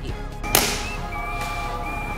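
Background music or an edit sound effect with no speech: a single sudden sharp hit about half a second in with a fading tail, then a few steady high held tones.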